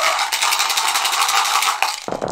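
Several dice rattling fast in a dice cup as they are shaken for a throw, a dense clicking that stops near the end as the cup is tipped out into the tray.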